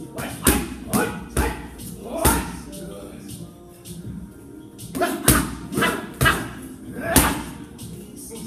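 Boxing-gloved punches smacking into padded striking mitts held by a trainer: a quick series of sharp hits in the first two and a half seconds, a pause, then another flurry from about five seconds in.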